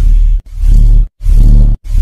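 Logo audio run through a heavy 'G Major'-style effect, deepened and distorted into loud, rumbling blasts. It is chopped into about four bursts of roughly half a second each, with short silent gaps between them.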